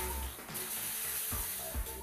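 Water drops sizzling with a steady high hiss as they boil away on a hot electric hot plate, the plate not yet hot enough for the drops to skate. Faint background music plays.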